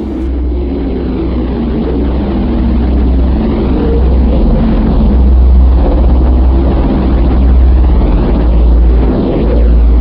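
Loud, steady deep rumble with a hissing wash above it that slowly sweeps up and down, swelling over the first few seconds and then holding: a cinematic space-ambience drone.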